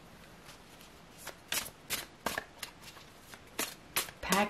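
Tarot cards being handled: a few sharp snaps and flicks of cards, about six, beginning about a second in, over a faint hiss.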